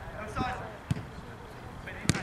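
A single short thud of a football being struck, about a second in.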